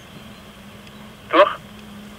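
Two-way radio channel: a steady hiss with a low hum, and one short spoken word coming through it about a second and a half in.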